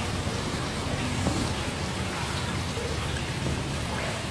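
A steady, even hiss.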